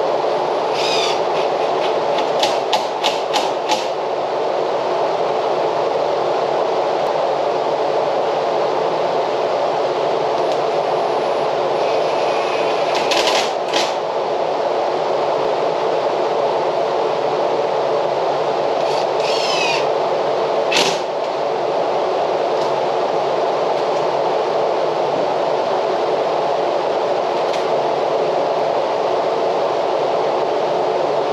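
A steady background whir runs throughout. Over it, a cordless drill fastens screws into the steel pocket door frame in a few short bursts and clicks: near the start, about 13 seconds in, and about 20 seconds in.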